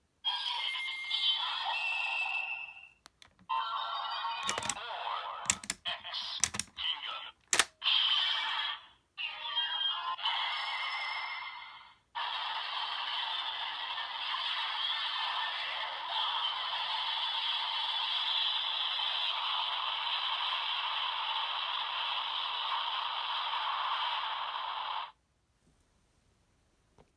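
Electronic sound effects and music played through the small built-in speaker of a DX Ultraman Z Riser toy. There are several short sequences broken by a few sharp plastic clicks, then one long, steady stretch from about halfway in that cuts off suddenly near the end.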